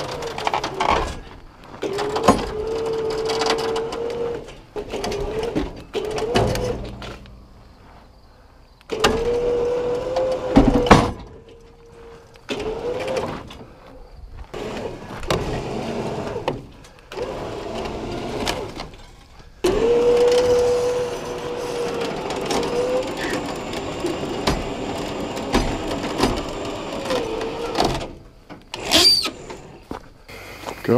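A motor whining in several separate runs, each rising to a steady pitch and sagging as it stops, with sharp knocks and clanks of metal in between. A brief high squeal near the end.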